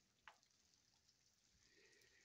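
Near silence, with one faint brief sound about a quarter of a second in.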